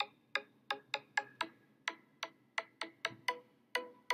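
A quick, uneven run of sharp ticks, about three a second, each with a faint brief ring.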